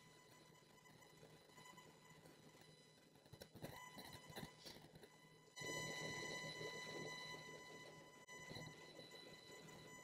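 Near silence with a faint steady electrical buzz from a faulty microphone: a thin high whine with evenly spaced overtones over a low hum. It gets somewhat louder a little past halfway.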